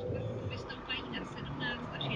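In-cabin car noise while driving: a steady low hum of engine and tyres, with faint muffled voices over it.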